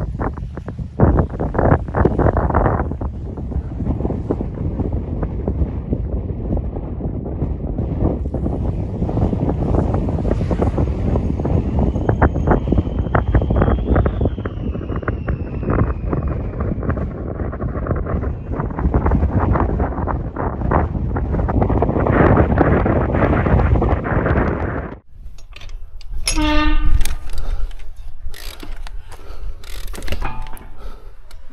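Heavy wind buffeting the microphone, with a faint whine that rises and then falls about halfway through. Near the end it breaks off abruptly to a quieter scene with a short squeak.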